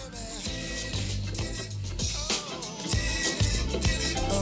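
Background music with a bass line and a beat.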